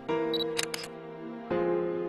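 Camera shutter sound effect: a short high beep, then a quick run of shutter clicks about half a second in, over held background music chords that change about one and a half seconds in.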